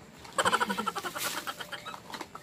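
A woman's high-pitched giggling, a rapid run of short bursts starting about half a second in, over light rustling of packaging and bubble wrap.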